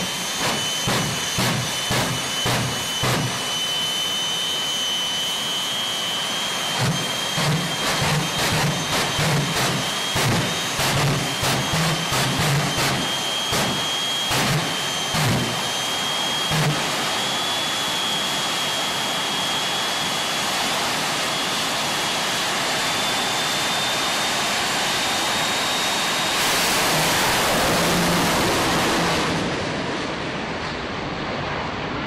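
Top Alcohol Funny Car drag racing engine running at the start line with a loud, lumpy beat of about three pulses a second, then settling into a steadier drone. A thin high whine runs underneath, and the noise grows loudest for about three seconds near the end.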